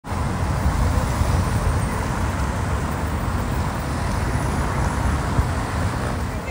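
Road traffic: cars driving past, a steady rumble of engines and tyres.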